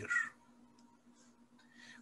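A man's voice trails off in the first moment, then near silence with only a faint steady electrical hum.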